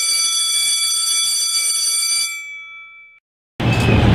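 Electric school bell ringing steadily, then dying away about two and a half seconds in.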